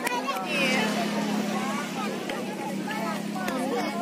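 Spectators' voices chattering and calling out around an outdoor football game, over a steady low engine hum.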